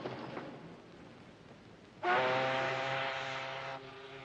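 A ship's horn sounding one long, steady blast, starting suddenly about two seconds in and cutting off shortly before the end.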